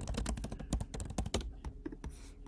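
Typing on a computer keyboard: a quick, irregular run of key clicks that stops shortly before the end.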